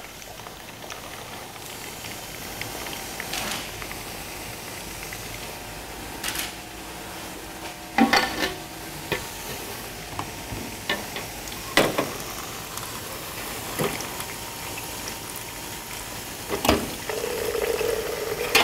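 Beer running from draft tap faucets into glass pitchers with a steady foamy hiss, as the beer lines are drained before cleaning. Sharp glassy clinks and knocks now and then, loudest about 8 and 12 seconds in, as the pitchers are handled and swapped under the taps.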